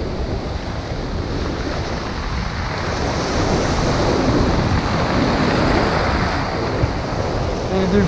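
Rough high-tide surf washing and breaking against a rock revetment, a steady rush of whitewater that swells louder a few seconds in, with wind buffeting the microphone.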